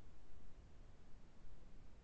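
Faint room tone: a low, uneven rumble with a steady hiss, no distinct sound events.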